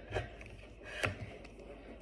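A plastic smoothie cup with lid and straw being handled as a straw is pushed into the lid: two short plastic clicks or knocks about a second apart.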